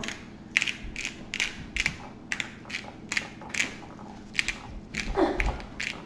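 Kroger Private Selection Steakhouse Grinder, a bottle-top seasoning grinder, twisted over and over, each turn a short gritty crunch as peppercorns, garlic and salt are ground, about two to three turns a second.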